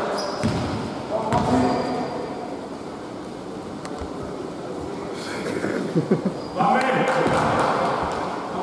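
A basketball bouncing on a hardwood gym floor, with several sharp thuds about six seconds in, amid players' indistinct voices echoing in the hall.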